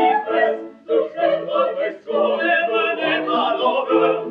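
Classical operetta singing, several voices together in an ensemble number, in phrases with brief breaks about one and two seconds in.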